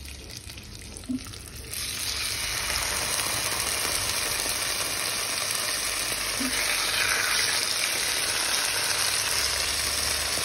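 Marinated pork shoulder pieces laid into hot oil in a frying pan: the sizzle starts suddenly about two seconds in and carries on steadily. It swells again around seven seconds in as a second piece goes into the pan.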